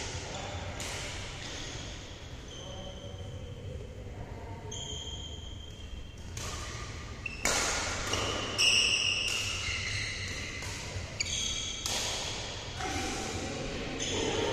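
Badminton being played in a large indoor hall: sharp racket strikes on the shuttlecock and short, high-pitched squeaks of shoes on the court floor, with some voices. The loudest strikes and squeaks come a little past halfway.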